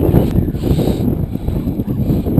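Wind buffeting the microphone: a dense, uneven low rumble, with a brief higher hiss about half a second in.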